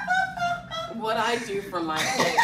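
A person laughing in high-pitched, drawn-out vocal bursts whose pitch slides downward in the second half.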